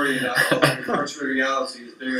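Speech only: a voice talking throughout, with no other sound standing out.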